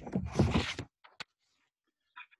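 Paper rustling close to a computer microphone for just under a second, followed by a single sharp click.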